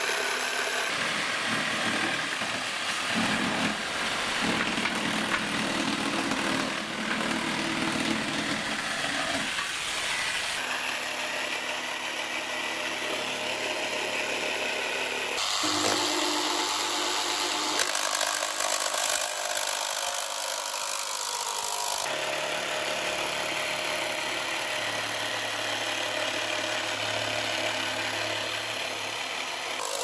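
Cordless barrel jigsaw sawing, first through plywood and then through a thin sheet, in several short takes. The sound changes abruptly at each cut.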